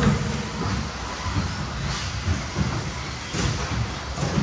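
2WD radio-control cars racing on an indoor turf track: a steady, rushing mix of motor and tyre noise with a low, uneven rumble.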